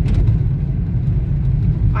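Steady low rumble of a car's engine and tyres on the road, heard from inside the cabin while driving.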